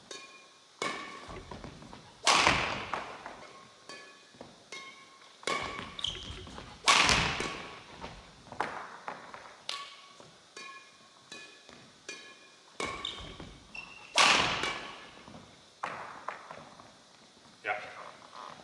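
Badminton racket strokes on a shuttlecock in a large, echoing hall. Three loud smashes come about five to seven seconds apart, each ringing out. Between them are lighter hits, footfalls and short sneaker squeaks on the court floor.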